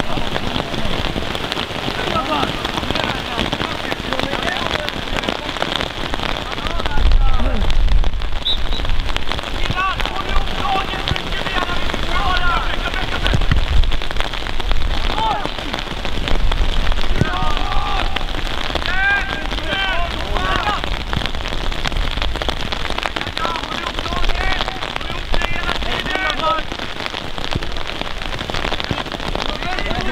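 Steady rain falling, heard as a dense, even crackle, with distant shouts of players carrying across the pitch. A low rumble comes in about seven seconds in and again around fourteen.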